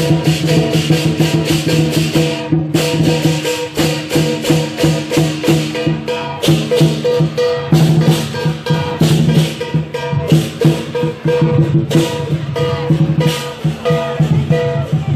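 Chinese lion dance percussion ensemble, a large drum with cymbals, playing a fast, dense rhythm, with a brief break about two and a half seconds in.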